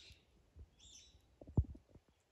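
A few soft low thumps, the strongest about a second and a half in, with a faint high bird chirp shortly before them.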